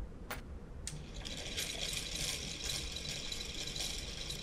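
A light click early on, then from about a second in a homemade series DC motor runs steadily under a load of six screws, turning at about 120 RPM. Its brushes rub on the spinning commutator with a steady high-pitched rasp.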